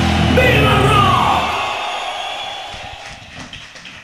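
Rock music dying away: a loud held chord cuts off just before, and its ringing fades over about two seconds while a voice shouts with a falling pitch about a second in. Faint scattered taps near the end.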